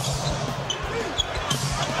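Basketball dribbled on a hardwood court, a run of short bounces, with brief high sneaker squeaks.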